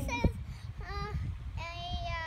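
A young child's high-pitched wordless singing: a short note about a second in and a longer held note near the end. A sharp knock just after the start is the loudest sound, over a steady low rumble.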